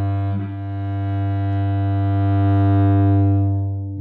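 Cello's low open string bowed with the whole length of the bow: one long sustained note with a bow change about half a second in, growing louder toward three seconds and easing off near the end. It is played for a deep, round tone that makes the string sing.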